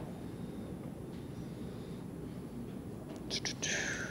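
Faint steady background noise of the recording, with a short breathy whisper or breath near the end.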